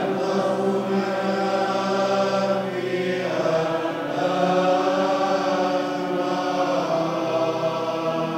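Sung liturgical chant: voices holding long, slow notes that change pitch every second or two, with a brief break about three seconds in.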